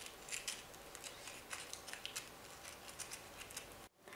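Scissors snipping small tabs into the rim of a glitter-foam half-sphere: faint, irregular short snips that stop abruptly near the end.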